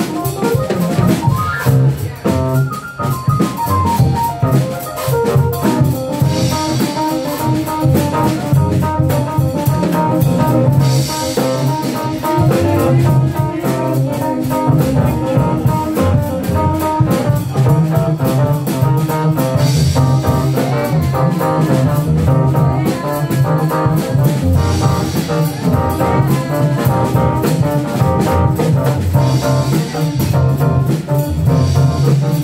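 Live jazzy jam of an electric stage keyboard played with both hands over a drum kit keeping a steady beat, with bursts of cymbal wash at times.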